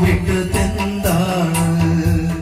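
A man singing a long, gliding melody through a microphone and amplifier, over a recorded backing track with a steady beat.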